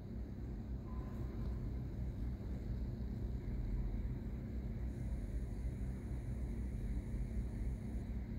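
Steady low rumble and hum of background machinery, with a faint thin high whine that enters about five seconds in and holds.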